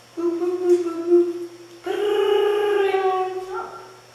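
A person's voice imitating a telephone ringing: two long held notes, the second a little higher than the first.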